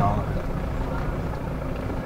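Vehicle engine running with a steady low rumble, heard from inside the cabin as it creeps along.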